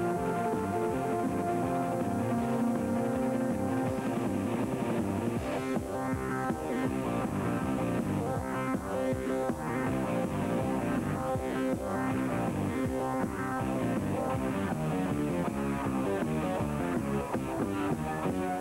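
Rock band playing an instrumental passage with no vocals, an electric guitar carrying shifting melodic lines over bass and a steady drum beat.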